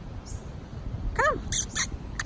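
A woman's high-pitched call of "Come" to her dogs about a second in, followed by three short, sharp squeaky chirps, over a low rumble.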